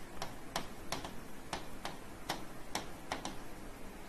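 Stylus tapping on the glass of an interactive touchscreen whiteboard while handwriting: about a dozen sharp, irregularly spaced taps as each stroke touches down.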